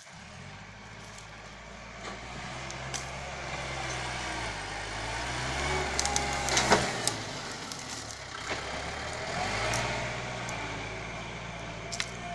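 Kubota tractor's diesel engine running as it pushes and grades soil with its front blade, getting louder as it comes close about halfway through, with a few sharp knocks at its closest.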